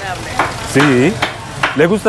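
A few short spoken words, one burst about two-thirds of a second in and another near the end, over a steady hiss.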